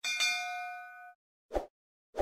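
A bright metallic ding, the notification-bell sound effect, that rings for about a second and then cuts off. A short thump follows about a second and a half in.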